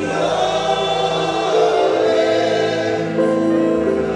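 Gospel music with a choir singing, its voices holding long notes over a steady low accompaniment.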